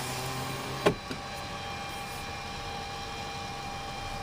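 A car's power window motor humming steadily, then stopping with a clunk about a second in, followed by a steady hiss of background noise.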